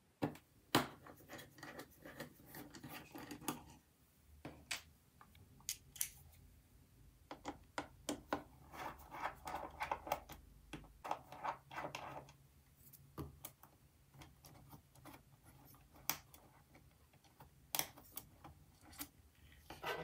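A precision Torx screwdriver backs out the small logic-board screws of a 2012 Mac mini: scattered light clicks and scratchy metal-on-metal rubbing as the bit turns and the screws come loose.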